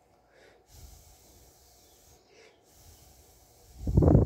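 Soft breathing close to the microphone, a few faint puffs, then one short loud breath just before the end.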